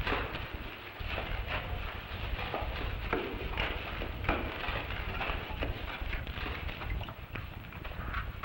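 Shovels and a pick digging into earth and rubble on a stone church floor: a string of irregular scrapes and thuds as several diggers work at once.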